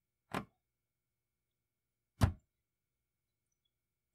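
Two short knocks in an otherwise near-silent stretch: a faint one just after the start and a louder, fuller one about two seconds in.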